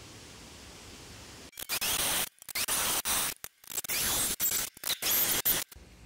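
Drilling holes through square steel tubing: a harsh, hissing grind that starts about a second and a half in, heard in several short chunks broken by abrupt silent gaps.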